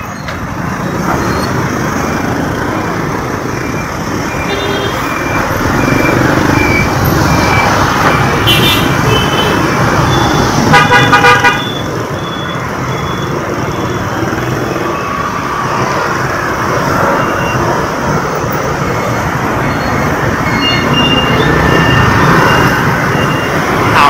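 Busy city street traffic, engines and road noise running steadily, with horns tooting throughout. One loud horn honk lasts under a second, a little before halfway.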